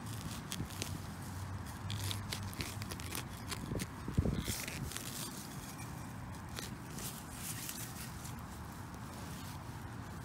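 Steel digging knife cutting and levering through grass turf and soil, a string of small crunches and scrapes, with one louder knock about four seconds in.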